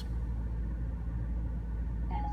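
Steady low rumble of a Maserati's engine idling, heard from inside the cabin.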